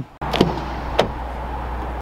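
Steady outdoor background noise, a low rumble under a hiss, with two sharp clicks about half a second and a second in.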